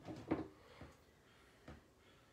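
A few short handling sounds of hands working buckskin and leather craft materials, the loudest about a third of a second in and two fainter ones later.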